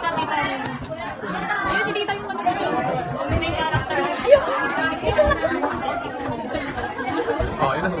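A group of people talking over one another in a room: steady overlapping chatter.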